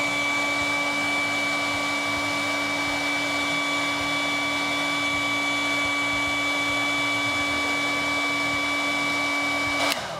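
Handheld hair dryer running steadily, a rush of air with a steady whine over it, blowing on an action figure's plastic head and kick pad to soften the plastic. It switches off at the very end.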